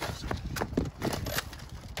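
Scuffle on an asphalt driveway: an irregular run of sharp clacks and knocks from feet, plastic toy weapons and bodies dropping to the ground.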